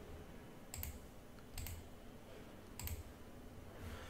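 Three faint clicks at a computer, about a second apart, over quiet room tone.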